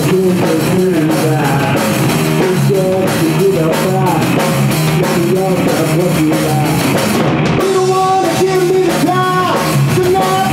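Live rock band playing loud: a male singer singing into a handheld microphone over electric guitar, bass guitar and a Pearl drum kit.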